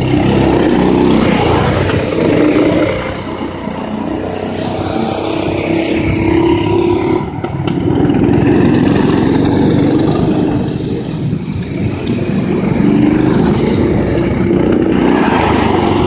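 Go-kart engines running as karts drive laps, the engine note shifting in pitch and swelling and fading as they come near and pull away, loudest as a kart passes close about eight seconds in.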